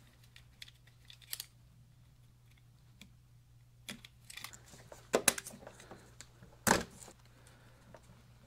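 Snap-off utility knife blade scraping and nicking electrical tape on a vehicle wiring harness, heard as scattered light clicks and short scrapes, with two sharper clicks in the second half.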